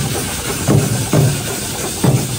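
A street drum troupe playing stick-beaten drums in a steady pattern of heavy strokes about every half second, over continuous crowd noise.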